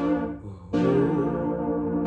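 Roland E-09 arranger keyboard playing held chords: one chord dies away, and a new chord is struck just under a second in and sustained.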